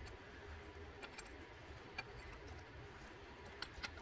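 A few faint, scattered metallic clicks of a wrench on the fuel filter tower's base bolts, about five over the stretch, two of them close together near the end, over a low steady background rumble.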